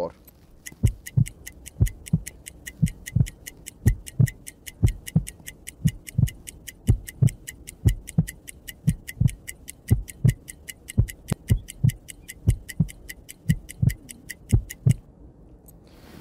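Added sound effects: a clock ticking quickly and evenly over a steady heartbeat thumping, marking the 15-second pulse count. The ticking stops sharply about a second before the end.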